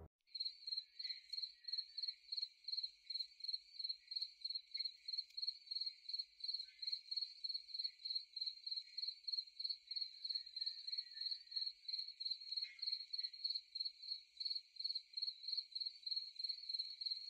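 Crickets chirping in a steady, even rhythm of about three high-pitched chirps a second. The sound cuts in suddenly at the start.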